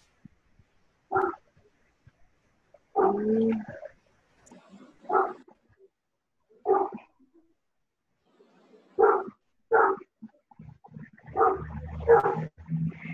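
A dog barking intermittently, about six short barks spread over several seconds, picked up through a participant's video-call microphone with silence between the barks.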